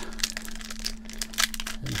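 Foil wrapper of a Pokémon Shining Fates booster pack crinkling as it is torn open by hand: a quick, irregular run of small crackles.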